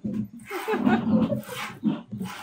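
A cow lowing in low, broken calls while being hand-milked, with streams of milk squirting into a plastic bucket.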